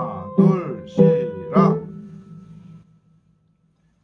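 Piano keyboard notes and left-hand chords struck in a slow beat, about four strokes half a second apart, ringing on and fading away to near silence about three seconds in.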